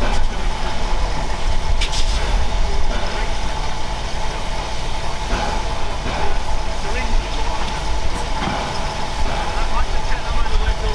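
Steady hiss and hum of the LNER Peppercorn A1 steam locomotive 60163 Tornado standing in steam, with a low rumble underneath. There is a brief sharp knock about two seconds in.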